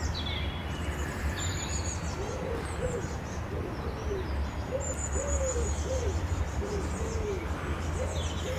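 Canada goose goslings peeping in short high downward chirps, with a run of soft, low, arched cooing calls about twice a second from about two seconds in, over a steady low rumble.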